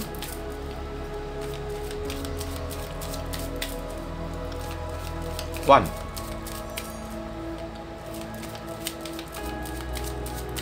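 Tarot cards being shuffled by hand: a stream of light, irregular card clicks and flicks over soft background music of long held tones.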